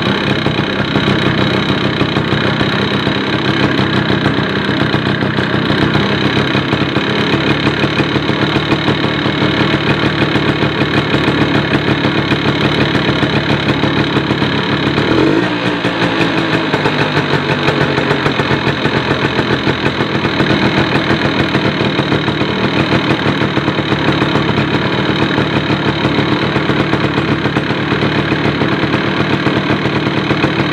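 Suzuki RC two-stroke single-cylinder engine idling steadily, its pitch briefly wavering about halfway through before settling again. It is running with its oil pump feeding far too much two-stroke oil, the cause of its heavy oil consumption.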